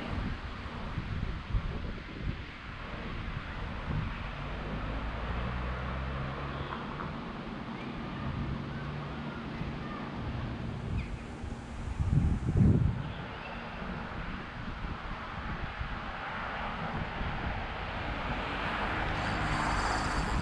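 Wind buffeting the microphone over outdoor background noise. A low, steady engine hum from a passing vehicle runs from about four to nine seconds in, and a louder low gust comes around twelve seconds.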